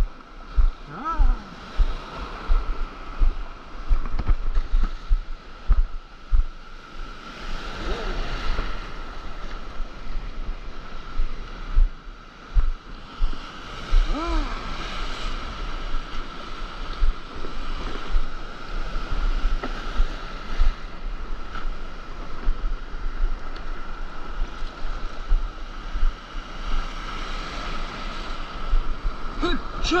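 Whitewater and small breaking waves rushing around an action camera on a paddleboard in the surf zone, with wind buffeting the microphone and frequent dull low thumps as water slaps the board and camera. A few short wordless whoops come through the water noise.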